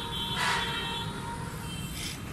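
Steady outdoor town background noise, like distant traffic, with a brief swell of noise about half a second in.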